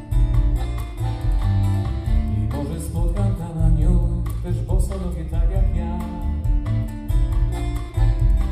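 Live band music: strummed acoustic guitars over electric bass guitar and drums, playing steadily between sung lines of the song.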